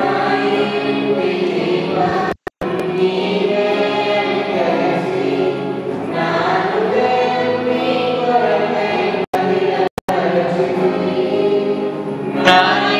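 A small mixed group of men and women singing together through microphones. The sound cuts out completely for a split second a few times.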